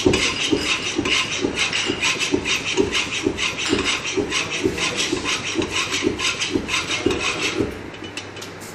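Bicycle floor pump worked fast, about two strokes a second, each stroke a thud of the plunger with a hiss of air pushed into the tyre. The pumping stops just before the end.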